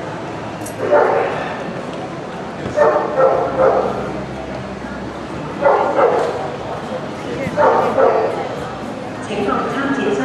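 A dog barking in short bouts, about five of them roughly two seconds apart, over the steady murmur of a large hall.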